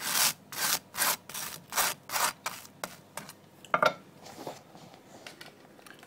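Table knife spreading butter on a slice of crisp toast: about six quick scrapes in the first three seconds, then fainter, slower strokes.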